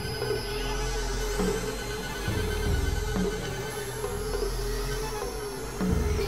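Layered experimental electronic music: a held, slightly wavering mid-pitched tone over a low synth drone, with a change of bass notes about two seconds in and faint sweeping tones high above.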